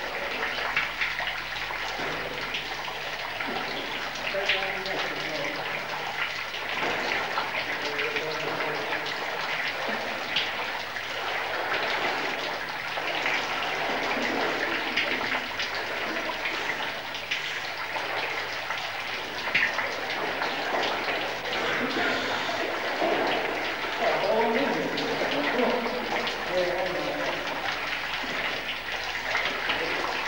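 Water splashing and rushing steadily in a narrow cave passage as mud-covered cavers work their way through liquid mud. Their muffled voices come through at times.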